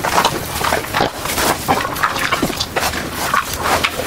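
Cartoon sound effect of greedy eating: fast, irregular chomping and gobbling, about four bites a second.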